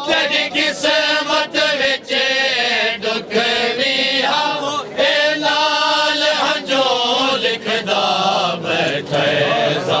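Male reciter chanting a Punjabi noha (Shia lament) in a high, wavering voice, with backing voices. Behind the voices runs a steady beat of sharp slaps about twice a second, the rhythm of matam chest-beating by the mourners.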